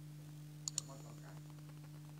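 Two quick sharp clicks about a tenth of a second apart, a third of the way in, over a steady low hum.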